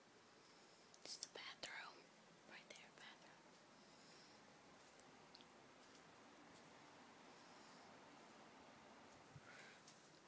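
Faint whispering in a few short snatches, about a second in and again around three seconds in; otherwise near silence, just room tone.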